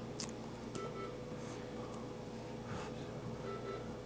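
Quiet room tone of angiography-suite equipment: a steady electrical hum with two short, faint electronic beeps, one about a second in and one near the end.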